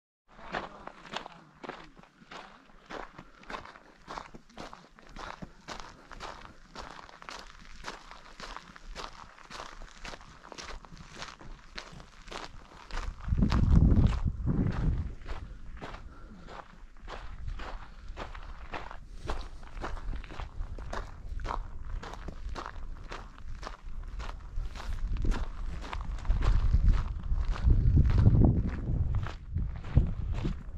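Footsteps of a hiker walking at a steady pace, about two steps a second. Low rumbling on the microphone comes in twice, about halfway through and near the end, louder than the steps.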